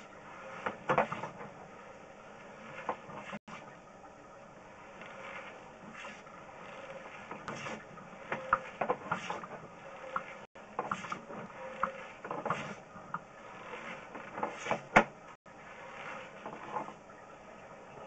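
Faint, irregular clicking and rattling of a sewer inspection camera's push cable and reel as the camera is fed along a clay tile drain line, over a steady low hiss.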